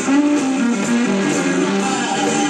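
Live blues band playing, led by electric guitar, with a run of notes stepping down in pitch during the first second and a half.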